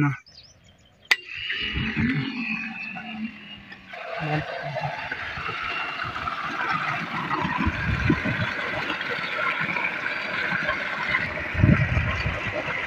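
Water from a 3-inch tube-well delivery pipe gushing into a concrete basin, a steady rush that sets in about four seconds in, after a single click about a second in.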